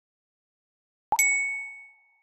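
A single bright bell-like ding, struck suddenly about a second in and ringing out over about a second.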